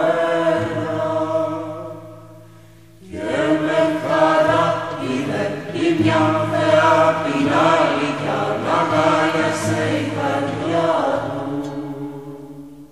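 Several voices chanting a slow, sustained melody over a steady low drone. A held phrase fades away about two seconds in, and a fuller phrase begins about a second later and continues.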